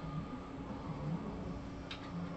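Steady low electrical hum of room and computer noise, with a single computer keyboard keystroke clicking near the end as a letter is typed.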